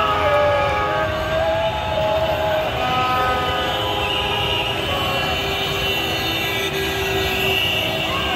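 Many horns sound together in overlapping held blasts at different pitches, over the steady din of a large crowd celebrating in the street.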